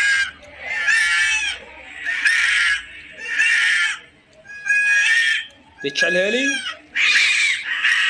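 Two cats fighting, screaming at each other in high, drawn-out yowls that come about once a second, with a lower gliding cry about six seconds in.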